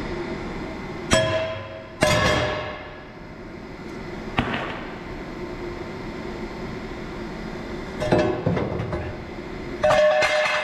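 Steel plate struck about five times, knocking a cut-out rectangle of plate out of a steel truck-bed bumper. Each blow rings out metallically, the first two about a second apart and two more near the end.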